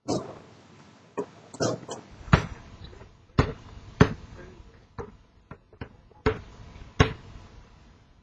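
Basketball bouncing on a paved driveway: about ten sharp slaps at uneven intervals.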